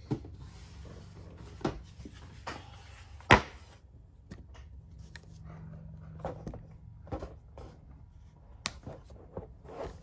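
Handling noise from a camera being moved and repositioned: scattered knocks, clicks and rubbing, with one sharp knock a little over three seconds in the loudest.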